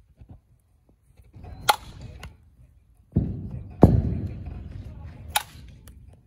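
A softball bat hitting softballs in a batting drill: three sharp cracks about two seconds apart, the middle one loudest.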